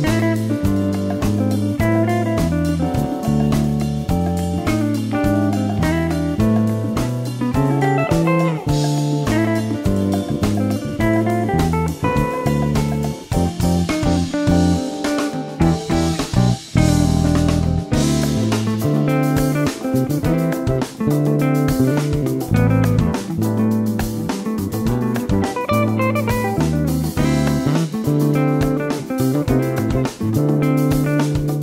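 Electric bass guitar, a Fender Jazz Bass fitted with Delano pickups and a Delano preamp, played fingerstyle in a continuous line along with a backing track that has drums.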